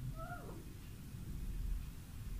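A cat meows once, a short call that falls in pitch at the end.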